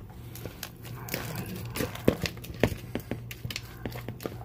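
Metal fork stirring tuna salad in a ceramic bowl, with irregular light clicks and knocks of the fork against the bowl, over a steady low hum.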